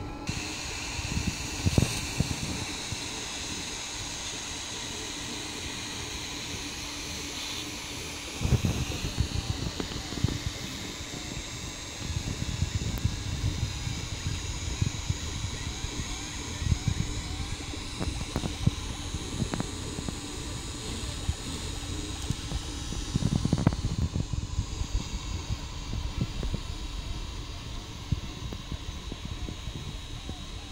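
3D printer running a print: its stepper motors whine in shifting, gliding tones as the print head moves, over the steady whir of its cooling fans. A few low thumps sound, the loudest about two-thirds of the way through.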